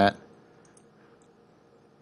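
A few faint, short computer mouse clicks against quiet room tone, as an on-screen prompt is clicked through.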